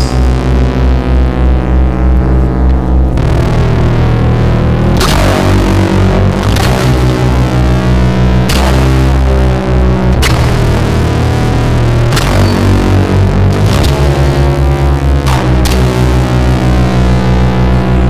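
Loud, distorted rock music in an instrumental passage: heavy sustained low guitar and bass tones, with crashing chords or cymbal hits struck every two seconds or so.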